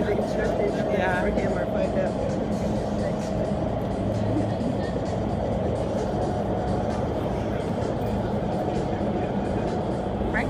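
Steady rush of the indoor skydiving vertical wind tunnel's fans and airflow, holding a flyer aloft, heard from outside the glass flight chamber.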